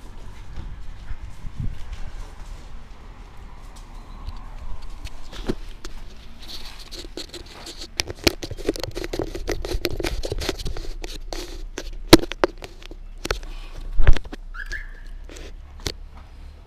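Close handling noise of a small action camera gripped and adjusted by hand: rubbing, scraping and rapid clicks on the body and mount, with two loud knocks about two seconds apart near the end.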